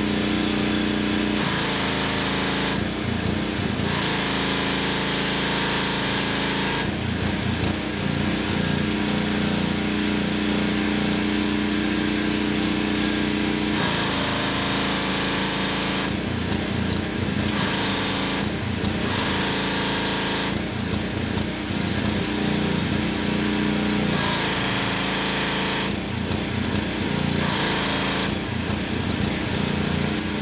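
Gasoline-engine pressure washer running steadily, with the hiss of the water spray coming and going several times over the engine's drone.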